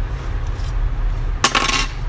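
A short clinking rattle of small hard parts being handled, about one and a half seconds in, over a steady low hum.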